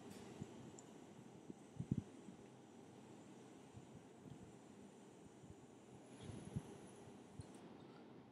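Near silence: faint room tone with a few brief faint ticks, the clearest about two seconds in and again near the end.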